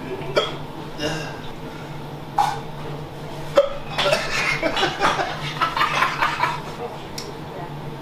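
Indistinct low speech and mouth noises from men eating at a table, with a short sharp sound about two and a half seconds in and a click near the middle, over a steady low hum.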